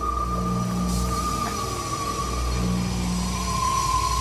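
Ominous suspense music: low droning notes held for about a second each, repeating in slow pulses, under a steady high-pitched whine.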